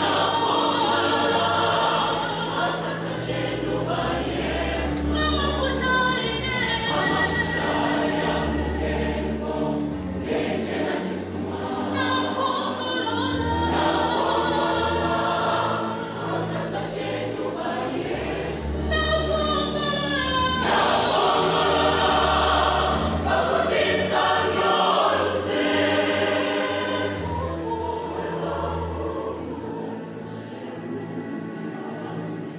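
A large church choir singing a gospel song in harmony, many voices together in continuous phrases.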